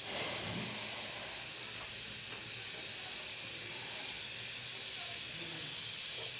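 Steady, even hiss with a faint low hum underneath: the background noise of the recording.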